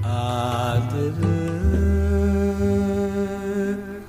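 Classical Sinhala song: a voice holding long, drawn-out notes over a low sustained accompaniment, turning quieter near the end.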